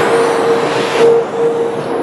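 Radio-controlled touring cars racing on an indoor carpet track, their motors whining and tyres hissing over the carpet as they pass, loudest about a second in.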